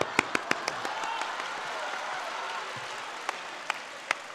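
Audience applause in a theatre, slowly dying down. Several sharp hand claps close to a stage microphone stand out in the first second.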